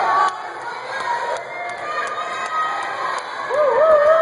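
Spectators cheering and shouting for a boat racer, with one loud wavering high-pitched cheer breaking out near the end.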